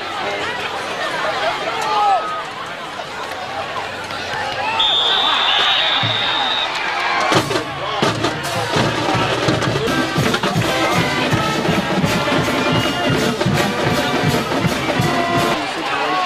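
Crowd voices at a football game, with a whistle held for about two seconds about five seconds in. About seven seconds in, a band with drums starts playing with a steady beat under the crowd.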